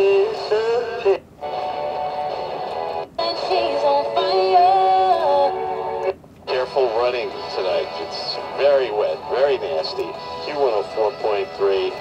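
FM broadcast audio coming through the small speaker of a toy PC-style FM scan radio: music, then a voice talking, cut by three brief dropouts as the scan button jumps it from station to station. The sound is thin, sibilant and distorted.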